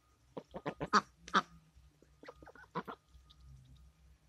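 Domestic ducks quacking: a quick run of short quacks in the first second and a half, then a few more about two and a half seconds in.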